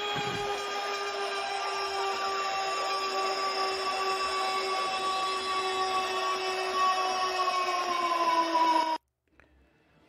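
Goal horn sound effect: one long, steady horn blast over a rushing noise, its pitch sagging slightly near the end before it cuts off suddenly about nine seconds in.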